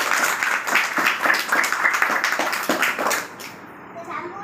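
Applause: a few people clapping by hand at an uneven, dense rate, which stops about three and a half seconds in.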